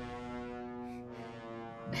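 A sustained low brass note from an orchestral film score, held steady and slowly fading.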